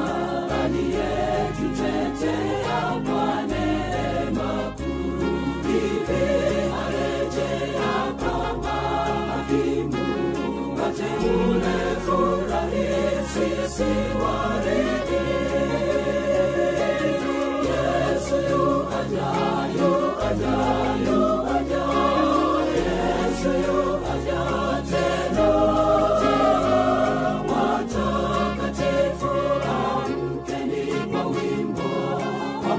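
Gospel choir singing an Adventist song over instrumental backing, with a bass line that moves note by note and a steady beat.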